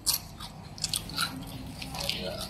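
Crispy fried potato sticks (keripik kentang mustofa) crunching in a few scattered, quiet crackles.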